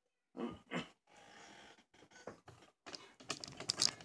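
Handling noise close to the microphone: light, scattered clicks and taps, with a short stretch of faint hiss, growing busier near the end as the recording device is reached for.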